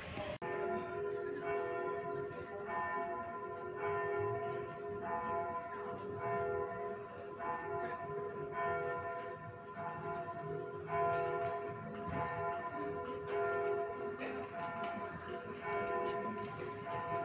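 Church bells ringing, struck about once a second, each strike leaving long ringing tones. The sound begins abruptly about half a second in.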